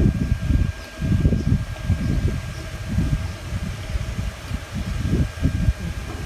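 Wind buffeting the phone's microphone: an uneven low rumble that swells and drops, with a faint steady thin tone beneath it.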